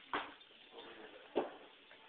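A yellow Labrador retriever moving about close by on a hard floor, with two short, sharp noises a little over a second apart.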